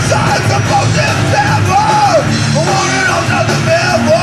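Live rock band playing loud: electric guitars, bass and a drum kit, with a singer yelling into a microphone.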